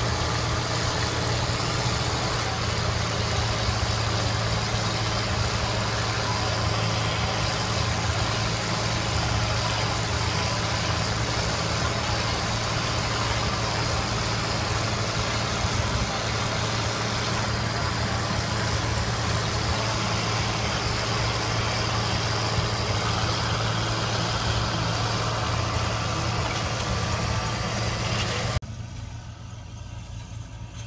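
International Harvester 3788 2+2 tractor's diesel engine running steadily under load while pulling a planter across a field. Near the end the sound drops abruptly to a quieter level.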